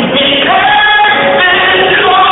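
Live R&B band with singing, recorded from the audience: voices hold sung notes over guitars, bass, drums and keys. The sound is dull and has no high end.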